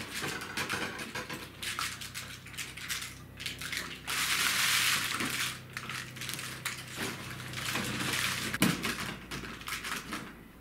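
Paper lantern lamp shade rustling and crinkling as it is handled and worked open on its wire frame, with a longer continuous rustle about four seconds in and a sharp click near the end.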